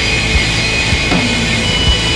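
Instrumental post-rock band playing live, loud and dense: sustained instruments and keyboard over a drum kit, with kick drum hits a few times in the two seconds.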